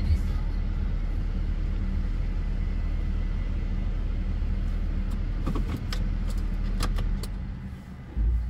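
Steady low rumble of a car's idling engine heard from inside the cabin. A few sharp clicks come in the second half.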